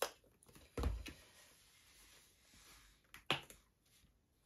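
Faint handling noises from pouring acrylic paint out of a plastic cup: a soft thump about a second in and a sharp click near the end.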